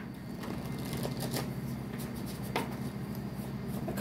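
A small deck of cards being shuffled by hand: soft, irregular flicks and clicks of the cards against each other, over a steady low hum.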